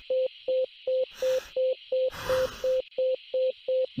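Simulated patient monitor beeping a steady single-pitched tone about three times a second, in step with the displayed heart rate of 180: a fast tachycardia. Two short rushes of noise come between the beeps, about a second and two seconds in.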